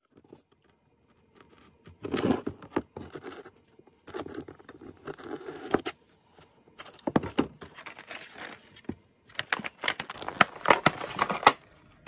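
Parts packaging and old rubber fuel line being handled on a cardboard-covered workbench: irregular bouts of rustling, tearing and scraping with sharp clicks, separated by short quiet gaps.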